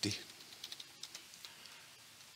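A few faint computer keyboard keystrokes, short separate clicks, as a number is typed in.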